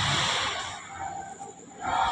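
A person breathing out close to the microphone: a noisy rush that fades about a second in and picks up again near the end, over a faint steady background hiss.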